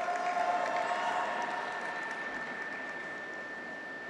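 Audience applause with a little cheering, dying away gradually. A held tone sounds over it for the first two seconds, and a faint thin high tone runs throughout.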